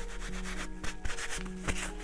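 Hands rubbing and wiping with a crumpled paper tissue: a series of short, scratchy strokes over soft background music with steady held tones.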